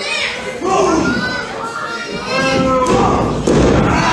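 A wrestler's body landing on the wrestling ring's canvas: one heavy thud near the end, among the chatter and shouts of a crowd that includes children.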